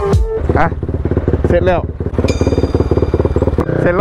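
Motorcycle engine idling with rapid, even firing pulses as background music cuts off at the start. A high steady whine sounds for about a second midway.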